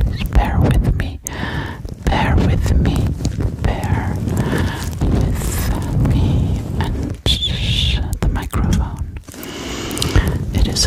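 Hands brushing and rubbing directly on a Blue Yeti microphone: a dense, continuous run of rumbly scrapes and small taps.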